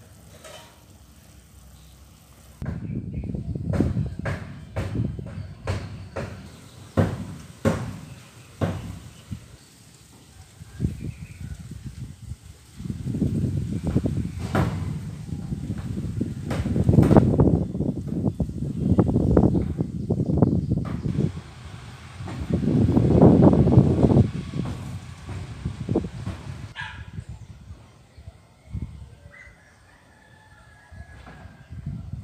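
Wind buffeting the microphone in irregular gusts, low and blustery, swelling and fading with the loudest gusts in the middle and second half, with scattered sharp clicks.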